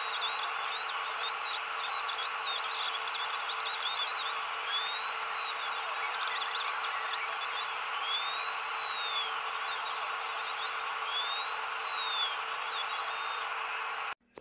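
Longer Ray5 10-watt diode laser engraver running: a steady fan hiss with a low hum, over which the gantry's stepper motors whine in glides that rise and fall as the laser head moves.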